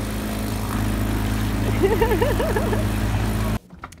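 An outboard motor on an inflatable dinghy running steadily under way, with a constant rush of wind and churning wake water over it. A voice is heard briefly about halfway through, and the sound cuts off shortly before the end.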